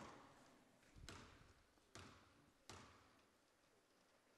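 A basketball bounced on a hardwood gym floor four times, about a second apart, each bounce faint and echoing in the gym: a player's dribble at the free-throw line before the shot.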